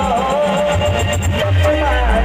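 Loud live Timli band music: a melody line over a strong bass and a steady drum beat.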